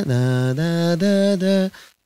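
A man singing unaccompanied in a baritone voice, long held notes stepping up and down in pitch, stopping shortly before the end.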